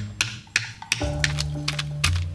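A small hammer tapping repeatedly on sandwich cookies in a plastic bag, crushing them: a quick run of sharp taps, several a second, over background music.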